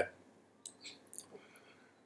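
A few faint, short clicks in a quiet pause, spread over a little under a second near the middle.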